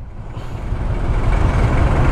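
Street traffic: a passing vehicle's engine and road noise, growing steadily louder.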